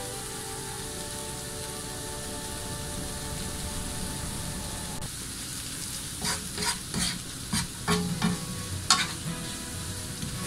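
Chopped long onion and minced garlic sizzling in oil in a nonstick frying pan, with a steady hiss. From about six seconds in, a wooden spatula stirs and scrapes the pan in short strokes.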